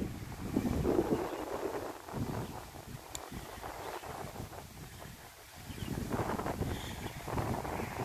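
Wind buffeting a phone microphone, swelling and fading in gusts, with a single faint click about three seconds in.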